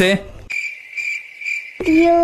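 Cricket-chirp sound effect: a steady high chirring that pulses about three times in a little over a second, the stock cue for an awkward silence after the hesitant "emmm...".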